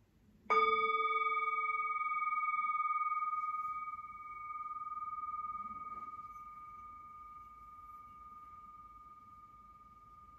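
Brass singing bowl struck once about half a second in, ringing with several tones; the lowest fades within a couple of seconds while a higher tone rings on, wavering slowly in loudness as it dies away. The bowl marks the start of a period of silent prayer.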